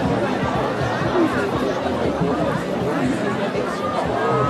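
Crowd chatter: many people talking at once in a steady babble of overlapping voices, with no single voice standing out.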